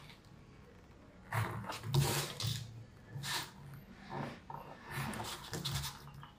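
A craft blade cutting through a paper shoe pattern in several short, scratchy strokes with brief pauses between them, as the pattern's edges are trimmed.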